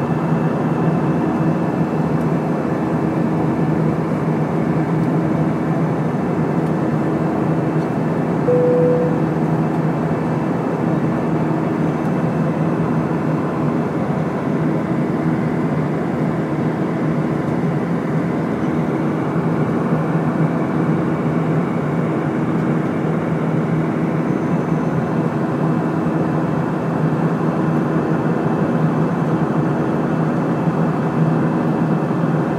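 Steady cabin noise inside an Airbus A320 in descent: the rush of airflow and the drone of its jet engines, with steady low hums. A short higher tone sounds briefly about eight seconds in.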